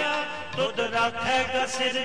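Sikh kirtan: a hymn sung to harmonium accompaniment, with held tones beneath a voice that bends in pitch.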